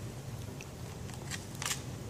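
Faint small handling sounds: a few light clicks and a short rustle near the end, over a low steady hum.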